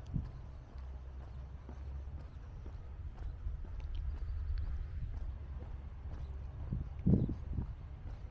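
Footsteps of a person walking on a path over a steady low rumble, with one short muffled thump about seven seconds in.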